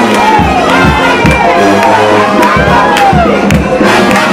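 A crowd cheering and shouting over a brass band playing, with a steady bass drum beat and a low held bass line under the voices.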